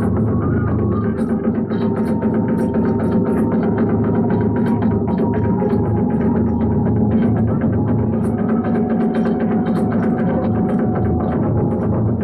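Live Iwami kagura hayashi: a drum beating a fast, dense rhythm with clashing hand cymbals, and a bamboo flute holding long high notes over it.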